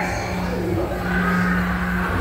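Steady low hum of the Walt Disney World PeopleMover ride train running along its track, driven by linear induction motors. Faint voices sound in the background.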